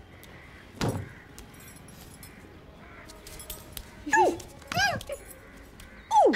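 A single thud about a second in, then a young child's high-pitched whooping cries, two short ones near the end, each rising and falling in pitch.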